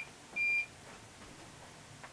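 A single short, high electronic beep about half a second in, then quiet room tone.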